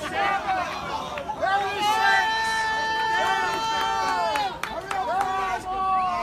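Crowd voices shouting encouragement; one voice holds a single long shout for about two and a half seconds in the middle.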